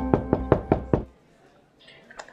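A quick run of about six knocks on a door in the first second, over the last held notes of a music sting.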